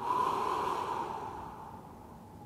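A man's single long audible breath, loud at once and fading away over about a second and a half.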